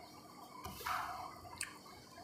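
Faint handling of a plastic set square and ruler on drawing paper: a short soft scrape a little under a second in, then a light click.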